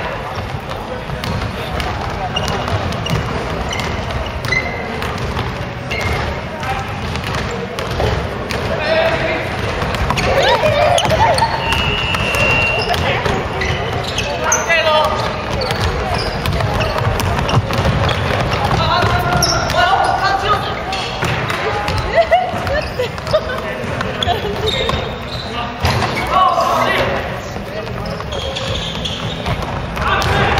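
Basketball game on a wooden gym floor: the ball bouncing and players' feet hitting the court, with indistinct voices calling out throughout.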